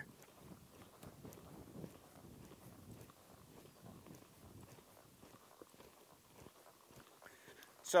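Faint, muffled hoofbeats of a horse loping on soft arena dirt, heard as irregular soft thuds.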